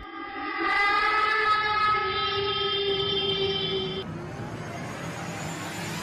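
Horror title-sequence sound design: a loud, sustained blaring chord like a horn, swelling up about a second in and holding until about four seconds, then giving way to a rushing hiss.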